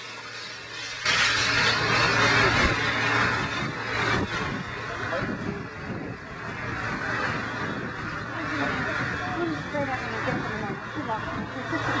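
Loud, steady rushing hiss as extinguishing agent is sprayed onto a burning liquefied natural gas pool fire. It starts suddenly about a second in, with people's voices faint beneath it.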